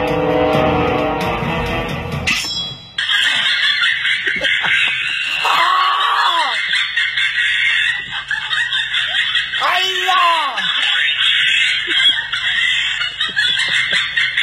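Guitar music that cuts off suddenly about three seconds in. After that comes a steady hiss and a person's voice giving two drawn-out cries, each rising and then falling in pitch, about halfway through and again a few seconds later.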